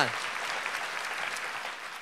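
Audience applauding, a steady patter of clapping.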